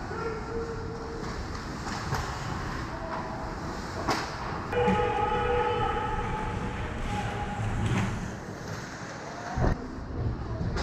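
Ice hockey rink during play: a steady scraping rush of skates on the ice, broken by three sharp stick or puck knocks. Partway through, a sustained tone holding several pitches at once lasts about three seconds.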